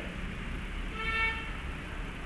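A pause in speech over a low steady hum; about a second in, a faint short pitched tone with several overtones sounds for about half a second.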